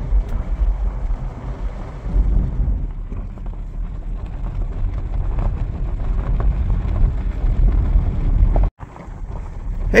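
A steady low rumble of wind buffeting the microphone outdoors, broken by a brief dropout near the end.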